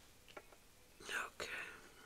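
A brief soft whisper about a second in, with a couple of faint clicks.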